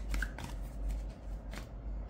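Tarot deck being shuffled by hand: a few short, sharp flicks of cards against each other.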